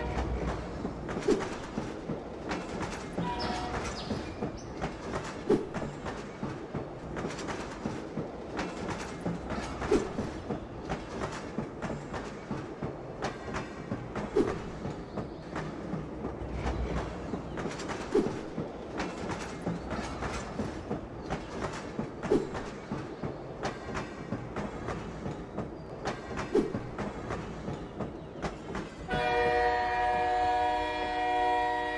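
Freight train running along the track: a steady rumble of wheels with clicking over the rail joints, and a louder clack about every four seconds.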